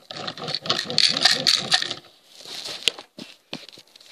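Plastic Lego toy truck rolled and handled right at the microphone: a rattling, scraping run of wheel and plastic noise for about two seconds, then a few light clicks.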